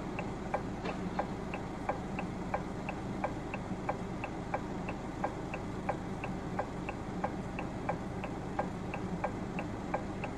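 A car's indicator or hazard-light flasher clicking steadily, close to three clicks a second, over a low engine hum inside the vehicle.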